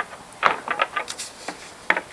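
Light clicks and knocks, about six or seven at irregular intervals, as the ends of a truss Dobsonian's poles seat into the blocks of the upper tube assembly.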